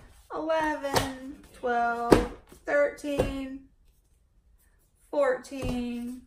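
A woman counting aloud, one drawn-out number at a time, while hardcover and paperback books are set down on a stack, with three short knocks of books landing.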